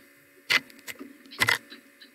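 Two sharp clicks about a second apart, with a few fainter ticks between, from a computer mouse clicking on screen items, over a faint steady hum.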